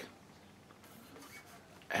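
Faint rubbing and handling noise as a Schecter V1 electric guitar is turned over in the hands. A short burst of speech begins right at the end.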